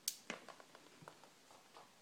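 A sharp click as the wax warmer's power switch is turned on, followed by a second click and a few faint ticks of handling.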